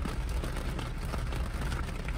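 Steady low rumble inside a car's cabin from the engine idling.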